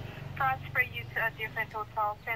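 A man's voice talking on a mobile phone call, quieter and less clear than the narration around it, with faint outdoor background noise.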